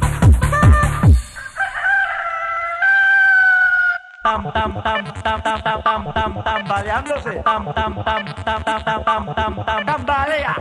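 A pounding electronic dance beat cuts off about a second in, and a rooster-crowing sound effect rings out for about two and a half seconds. A new dance track with a steady, busy beat starts at about four seconds.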